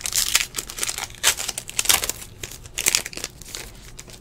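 Foil wrapper of a Panini football card pack crinkling and tearing as it is ripped open by hand, in several rustles, the loudest near the start and about one, two and three seconds in.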